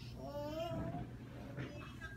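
A small child's voice making one drawn-out, high, meow-like call lasting under a second, followed by a short fainter sound near the end.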